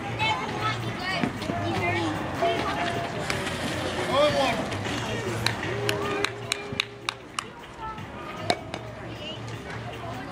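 Background voices of players and spectators, with a string of sharp hand claps in the second half.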